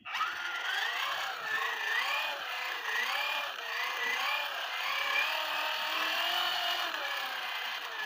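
Children's ride-on-car gearbox and DC motor, back-driven by hand with a screwdriver as a crank so it works as a generator. Its gears whine steadily, and the pitch wavers up and down with the uneven hand-cranking speed. The sound starts suddenly as the cranking begins.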